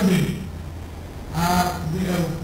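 A man lecturing into a podium microphone, a short pause between phrases in the middle, over a steady low hum.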